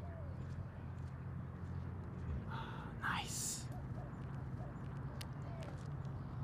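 Outdoor park ambience: a steady low hum with faint short bird chirps now and then, and one brief louder call falling in pitch about two and a half seconds in.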